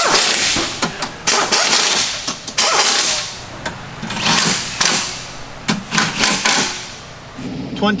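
Cordless impact wrench run in about five short bursts of a second or so each, rattling as it works fasteners on a car's front end.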